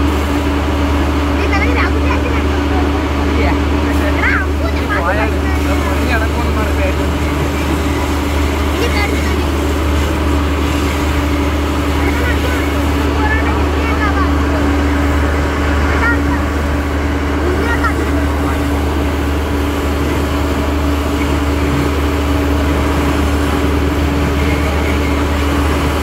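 A fire engine's motor running steadily at a constant speed while its pump feeds the hoses, a continuous low drone with a steady hum above it. People's voices talk over it on and off.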